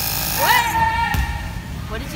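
Cordless battery tyre inflator's small compressor motor running as it pumps up a wheelchair wheel's tyre, cutting off about half a second in. A woman's voice then rises into a long held vocal sound.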